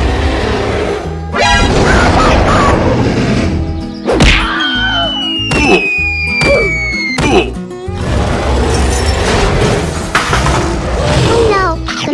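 Cartoon background music with added sound effects: several whacks and crashes, and a long falling whistle a few seconds in that ends in a thud.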